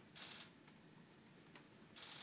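Near silence: room tone, with a faint brief rustle near the start.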